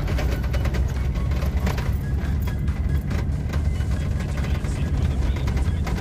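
Steady low rumble and irregular rattling of a four-wheel-drive vehicle driving over a rough unpaved desert road, heard from inside the cabin, with music playing along.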